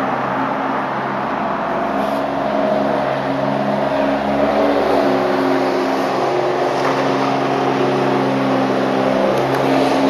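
Steady hum of a running motor, with several held tones that shift slightly about halfway through.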